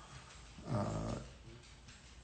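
A man's single drawn-out hesitant "uh" about a second in, otherwise quiet room tone.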